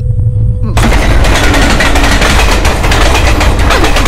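A sudden, loud burst of dense, rapid crackling starts about a second in and runs on over a low rumble.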